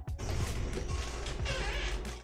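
A padded gaming chair creaking and shifting as a person twists round in it to reach behind, with small clicks and rustles.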